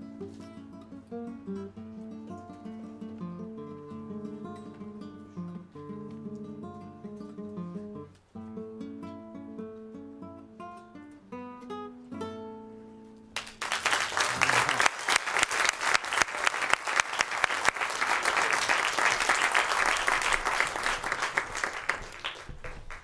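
Solo acoustic guitar playing plucked melody and bass notes, closing on a held chord about twelve seconds in. Then an audience applauds, louder than the guitar, and the clapping thins out near the end.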